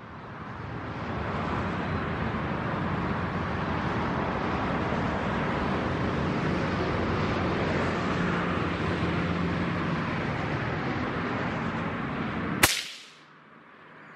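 A single shot from a CZ527 rifle in .17 Hornet, one sudden crack near the end, over a steady rushing background noise that falls away just after it.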